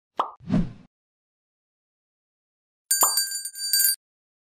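End-card sound effects: two short pops in the first second. About three seconds in comes a click, then a bell-like ringing chime of about a second that stops abruptly.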